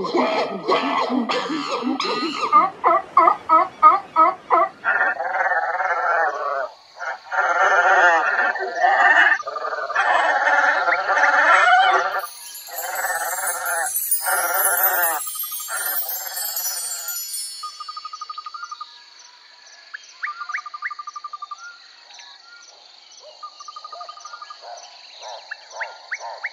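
A string of animal-like cries with a wavering pitch, then a bright shimmering chime run sliding downward about halfway through, then quieter short beeps over steady, evenly spaced ticks: a layered sound-effects track.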